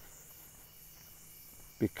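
Faint, steady, high-pitched chorus of crickets at night, with a single spoken word near the end.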